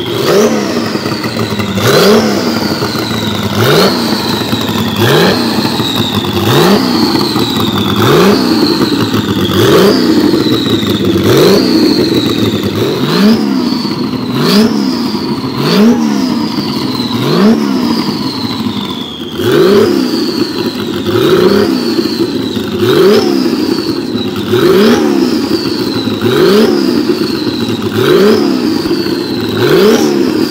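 Porsche 935 Kremer K3's twin-turbo flat-six revved repeatedly by hand at the throttle linkage. Each blip rises sharply and falls back toward idle, about one every one and a half to two seconds.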